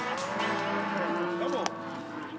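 Cattle bawling, several calls overlapping, some rising and falling in pitch, with one sharp click about a second and a half in.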